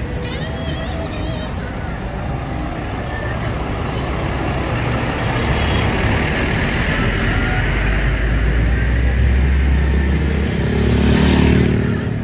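A double-decker coach's diesel engine rumbling close by, getting louder through the middle, with a brief hiss near the end. Street voices are faintly heard underneath.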